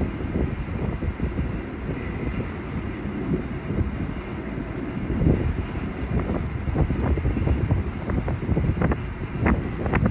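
Strong wind blowing across the microphone: a dense low rush that surges and falls in gusts, with short, sharper buffets from about six seconds in.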